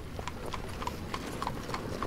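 A horse's hooves clip-clopping in a steady rhythm, about five strikes a second, set against a low street-ambience hiss.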